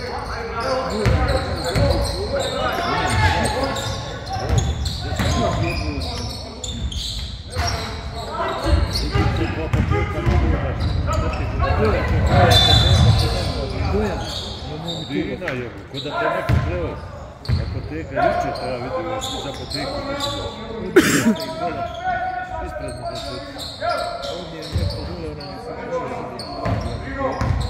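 A basketball bouncing on a wooden court during play, with players and coaches calling out, all echoing in a large gym.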